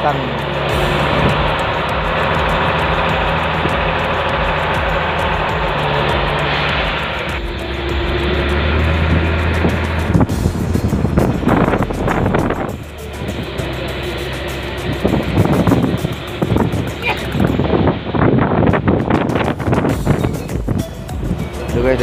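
Fishing boat's engine running steadily, with wind buffeting the microphone in irregular gusts from about ten seconds in.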